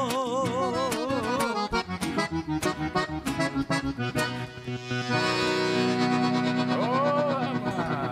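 The closing bars of a gaúcho vaneira on accordion with band. A sung note held with vibrato ends about a second in, then short, punched-out staccato chords follow, and the piece finishes on a long held accordion chord that begins to fade near the end.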